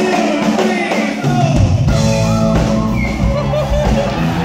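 Live rock band and group of singers performing: voices sing unaccompanied at first, then the bass and drums come back in about a second and a half in, ending the a cappella break.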